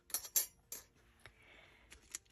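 Thin metal cutting dies clinking against each other as they are handled and set down on the pile: a few sharp clicks in the first second, then a faint rustle of plastic packaging.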